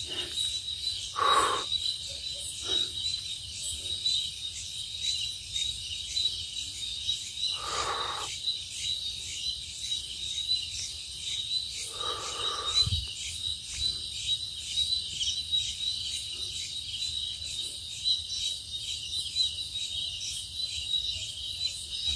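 A steady, high-pitched chorus of night insects chirring, with a fast pulsing texture. A few brief noises about 1, 8 and 12 seconds in, and a short low thump near 13 seconds.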